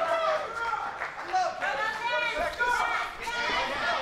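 Raised voices shouting from around the cage, pitched higher than ordinary talk, with crowd chatter behind them.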